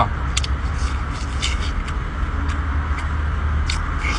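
Short wet sucking and smacking clicks from a mouth eating shellfish, a handful of them spread across the few seconds, over a steady low background rumble.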